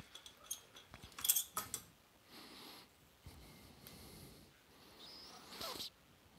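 Faint clicks and short scrapes as a 5881 power tube is rocked and pulled out of its socket on a valve guitar amplifier chassis, most of them in the first two seconds, followed by faint handling rustle.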